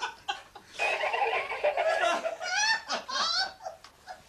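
Pet parrot vocalising: a harsh, buzzy call from about a second in, then a run of high, rising laugh-like notes.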